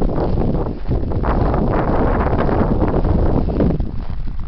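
Wind rumbling on the camera microphone, mixed with footsteps crunching through snow as the camera is carried along.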